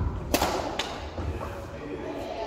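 A badminton racket striking a shuttlecock: a sharp crack about a third of a second in, then a fainter click about half a second later.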